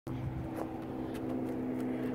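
Steady hum of a motor or engine running, holding an even pitch.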